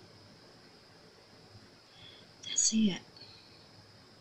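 Near-silent room tone, broken once about two and a half seconds in by a single short word, spoken low or whispered.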